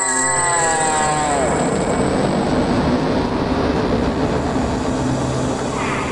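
A sound like an aircraft flying past: a whine that falls steeply in pitch over the first second and a half, giving way to a steady rumbling roar.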